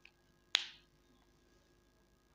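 A faint click, then about half a second in a single sharp tap of a marker tip against the whiteboard.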